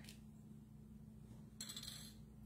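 Near silence: steady low room hum, with a faint short rustle about a second and a half in as a small paintbrush is handled.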